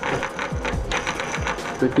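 Rapid, even ticking of a bicycle rear freewheel's pawls as the wheel or sprocket cluster is turned.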